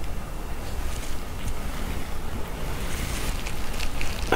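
A steady rushing hiss with a low rumble, like room or microphone noise, under a few faint soft taps and plops as thick peanut soup is scraped from a bowl into a glass bowl.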